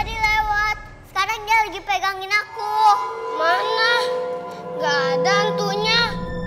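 Music with a young girl's high singing voice in short wavering phrases over steady held notes.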